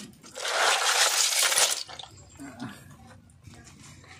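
Small shellfish shells clattering and clinking against each other as a hand stirs and rubs them in a plastic basin of water while washing them. It is loud for the first second and a half, then much quieter.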